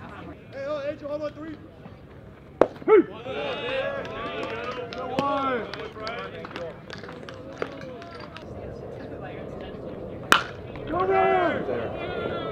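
Shouting and calling from players and spectators across a baseball field. Two sharp cracks ring out, about two and a half and ten seconds in; the second is a bat hitting the ball, followed by a burst of shouts.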